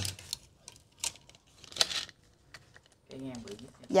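Light clicks and brief rustles of handling as a retractable steel tape measure is stretched and moved across a brass mantel clock, with one sharper rustle a little before two seconds in.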